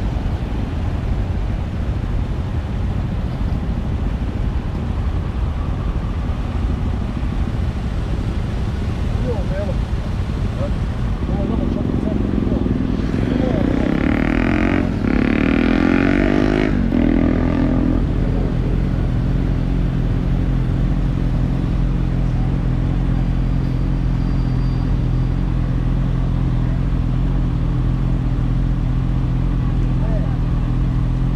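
Motorbike engines idling in city traffic at a stop light. A louder vehicle sound swells for several seconds in the middle, then the steady idle carries on.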